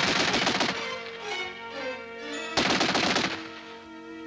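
Two short bursts of automatic fire from a pan-fed Soviet DP light machine gun, the first right at the start and the second about two and a half seconds in, over background music.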